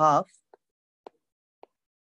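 Three faint short taps about half a second apart from a stylus on a tablet's glass screen while it writes, after the tail of a spoken word.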